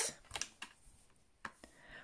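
Faint handling sounds of a clear plastic stamp-set case being picked up and held: a few light clicks and rustles.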